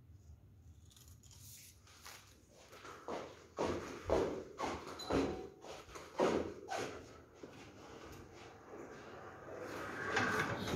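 Quiet footsteps and rustling handling noise: a string of soft, irregular thuds about two a second through the middle, over a low steady room hum.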